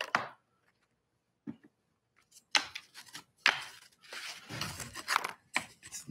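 Small cut wooden box panels being handled on a workbench: a run of sharp wooden knocks and clacks as pieces are set down and shuffled against one another, sparse at first and busier in the second half.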